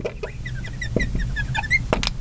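Marker tip squeaking on a glass lightboard while a word is written: a quick run of short squeaks with a few light taps as the tip lifts and touches down.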